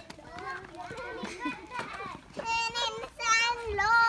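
Young children's high-pitched shouts and calls while playing, with long drawn-out calls in the second half.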